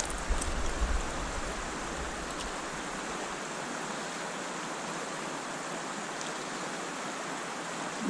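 Steady rush of fast-flowing stream water over a riffle, with some low rumble in the first two seconds.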